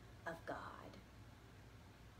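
A woman's soft, breathy voice saying two words in the first second, then quiet room tone.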